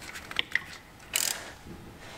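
Faint metallic clicks and a short scraping rasp about a second in, from hand tools and metal parts as a power steering pump and its bracket are fitted to an LS3 V8.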